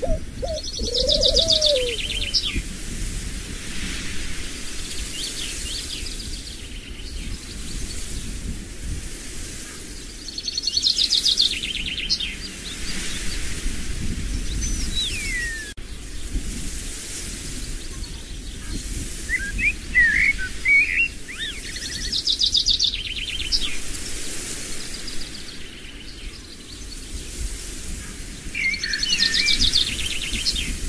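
Birds singing: a short trilled phrase comes back about every ten seconds, four times, with thin whistles and a falling note in between, over a steady low rumble.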